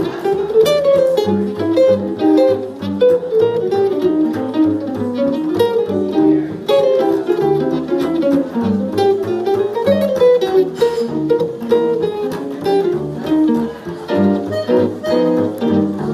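Archtop jazz guitar playing a solo in quick bebop single-note lines, with low notes keeping a steady beat beneath.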